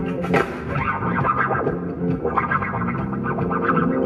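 Live funk band playing an instrumental passage: keyboards and bass guitar under a busy upper-register lead line that moves through short phrases.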